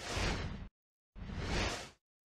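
Two whoosh sound effects for an animated logo, each a rush of noise lasting under a second, the second starting about a second after the first.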